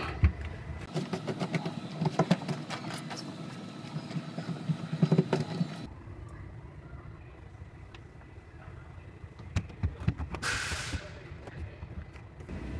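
Sound-deadening pads being handled and pressed by hand onto the sheet-metal trunk floor: scattered taps, clicks and rustles through the first half, then quieter handling. A brief hiss comes shortly before the end.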